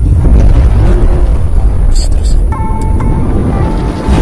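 Outro sound effect: a loud, deep rumbling whoosh under music, with sustained musical tones coming in about halfway through.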